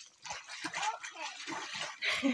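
Water splashing around a child's legs as she wades in.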